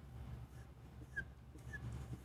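Dry-erase marker squeaking on a whiteboard as lines are hatched under a drawn curve: two short, high squeaks in the second half, faint over a low room hum.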